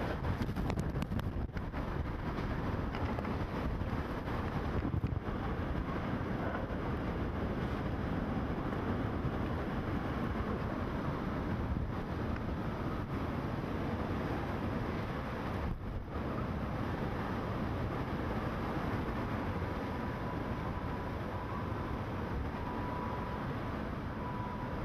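Hurricane-force wind blowing steadily and loudly, buffeting the microphone, with small swells as gusts come through.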